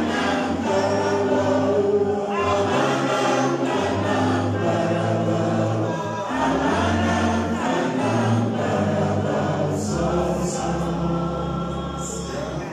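A group of voices singing a gospel song, with a man's voice leading on a microphone over steady low sustained notes.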